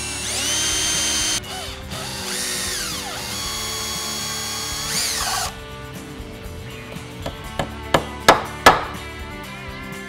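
Cordless drill spinning up with a rising whine and boring small holes into cedar in two runs, then a small hammer tapping nails into the cedar roof, about five sharp taps, the last ones loudest.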